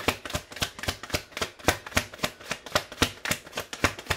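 Tarot cards being shuffled by hand: a quick, even run of card clicks, about seven or eight a second.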